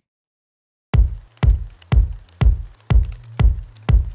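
After about a second of silence, an electronic house beat starts: a deep four-on-the-floor kick drum, about two kicks a second, over a low sustained bass tone, played back from a drum-rack project.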